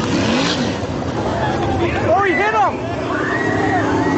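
Winged sprint cars' V8 engines running together on a dirt oval, recorded from the grandstand, with spectators' voices and calls over them about halfway through and near the end.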